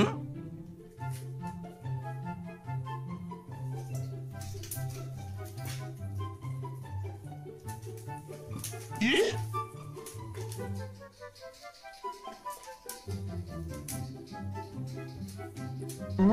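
Background music with a steady, bouncy repeating bass line. A quick rising glide sound effect cuts in about nine seconds in, and the music drops out briefly about twelve seconds in before it resumes.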